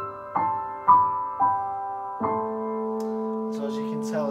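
Yamaha CLP685 digital piano playing its Bösendorfer Imperial grand sample, which has a mellow tone. A few single notes sound, then a chord is struck about two seconds in and left to ring.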